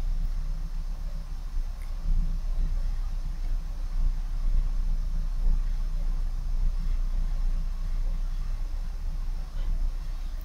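Steady low machinery drone of a ship's workshop, with a few faint metallic clicks as a spanner tightens the nut on the plug fitted to a fuel valve's return line on the test bench.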